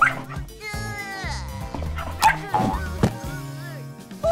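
A cartoon puppy barking and yipping a few times over background music.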